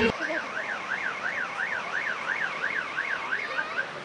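Car alarm sounding: a warbling tone sweeping up and down about three times a second, fading out just before the end.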